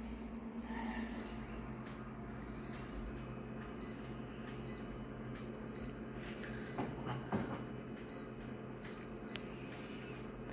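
Short high key beeps from a photocopier's touchscreen panel, one for each tap, about nine in all at uneven intervals. A steady low hum runs underneath.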